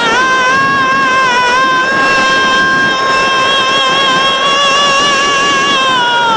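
A man's voice holding one long, high sung note through a microphone, a sustained wail in a recited Shia elegy, rising into the note at the start and then holding it with a slight waver in pitch.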